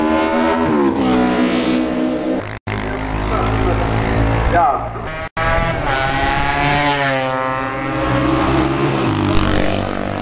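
Classic 500 cc racing motorcycles at full throttle passing one after another, the engine note climbing and dropping as each bike goes by and shifts gear. The sound cuts out abruptly twice.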